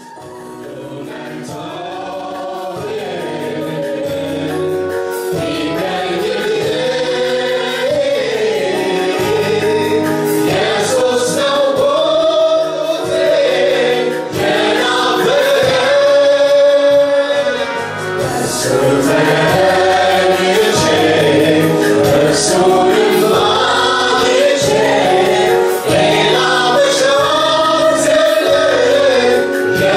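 Gospel worship song sung by a male lead singer with a group of female backing singers, fading in over the first few seconds.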